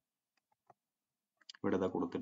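Speech only: a pause with a few faint clicks, then the lecturer's voice starting again about one and a half seconds in.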